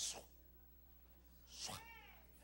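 A man's voice making two short non-word sounds into a microphone. First comes a brief hiss, then, near the end, a quick sliding vocal sound that rises and falls in pitch. The rest is quiet.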